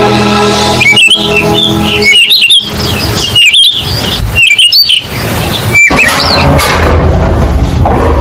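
Songbirds chirping in quick warbling runs over a background music track; the chirping stops about six seconds in while the music goes on.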